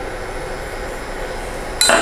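Steady background room noise, with a sharp clink near the end as a metal spoon strikes a glass measuring jug.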